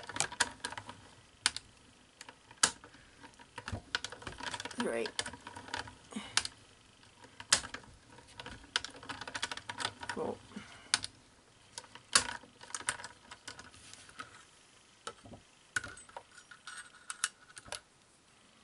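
Irregular clicks, taps and clatter of plastic cutting plates, a shim and a metal die being handled and fed through a die-cutting machine.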